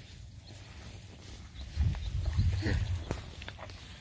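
A young calf grazing close by, tearing and chewing short grass, with a few sharp clicks. There is a louder stretch in the middle and a low rumble throughout.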